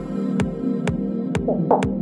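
Progressive house music: a steady four-on-the-floor kick drum about twice a second under a sustained synth pad, with a short gliding synth flourish near the end.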